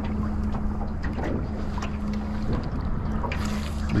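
Open-water ambience on a small aluminium boat sitting still: wind on the microphone and water against the hull, over a steady low hum. A brief hiss comes a little before the end.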